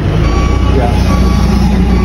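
Telehandler's diesel engine running close by with a steady low rumble while it carries a raised bucket loaded with bundles of panels.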